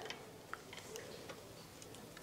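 Faint clicks and ticks as a folding teleprompter's metal frame is handled: one clearer click about half a second in, then a few fainter ones.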